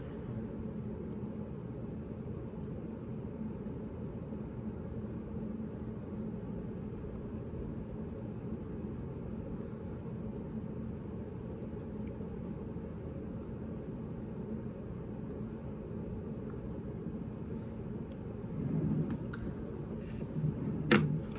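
Steady low rumble with a faint hum: room background noise, with no clear event in it.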